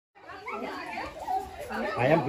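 Indistinct voices of several people talking at once, starting just after a moment of silence.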